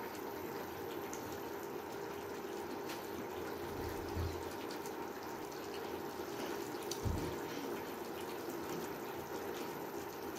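Sauce simmering in a pan on a cooktop: a steady bubbling, watery hiss over a low hum, with faint clicks and two low thumps about four and seven seconds in.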